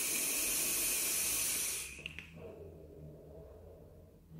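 A long draw on a box-mod vape: a steady hiss of air and vapour pulled through the atomizer, cutting off about two seconds in, then a softer, lower hiss.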